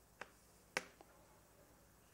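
Chalk clicking against a blackboard as it writes: three short, faint clicks in the first second, the middle one loudest.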